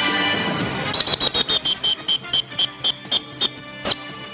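Theme music dying away, then a run of about fourteen sharp high clicks, each with a brief high tone, coming quickly at first and slowing toward the end, like a ticking sound effect.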